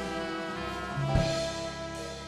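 Live band with a horn section of saxophones and trumpet playing held chords over drums, changing chord with a drum accent a little after a second in.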